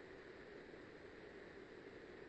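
Near silence: steady room tone.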